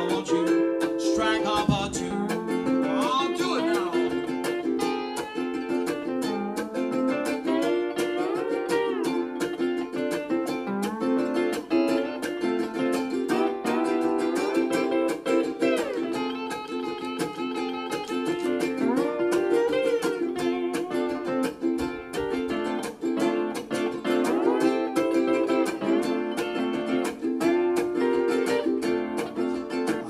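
Instrumental break on ukulele and lap steel guitar: the ukulele strums the chords while the steel guitar plays a lead whose notes slide up and down.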